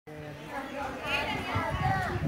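Unclear voices of people and children talking and calling out in the background, with a higher-pitched child's voice about a second in.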